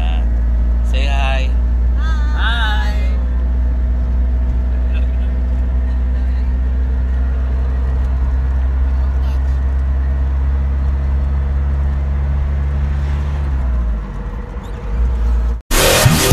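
Passenger van's engine and road noise heard from inside the cabin: a steady low drone, with the engine note sliding down about thirteen seconds in as the van slows. Brief voices come over it in the first few seconds.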